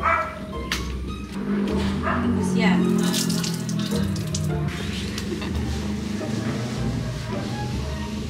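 Background music, with a splash of water about three to four seconds in as a wet towel is wrung out onto a tiled shower floor.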